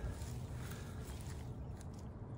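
A basenji sniffing and nosing through lawn grass, over a low steady rumble.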